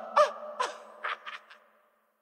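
Rhythmic bed-spring squeaks, about two a second, each a short squeak sliding down in pitch, fading out and stopping about one and a half seconds in.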